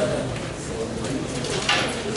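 Indistinct low talk in a meeting room, with a brief rustle near the end.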